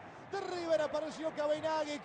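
A male football commentator shouting rapid, high-pitched words in Spanish in celebration of a goal, starting about a third of a second in after a brief lull.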